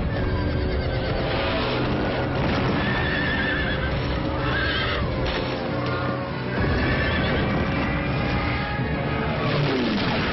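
Horses whinnying and galloping, with hoofbeats, over film music. Several whinny calls arch and fall in pitch a few seconds in.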